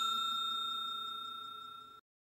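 A struck bell-like chime ringing out with a clear, pure high tone, fading steadily away until it dies out near the end.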